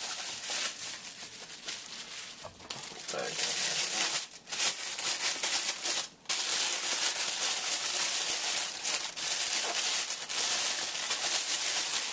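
Clear plastic packaging crinkling and crackling as a camera lens is unwrapped by hand, with two brief pauses about four and six seconds in.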